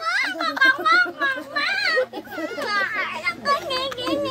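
Children's voices: excited, high-pitched chatter and laughter that swoops up and down in pitch.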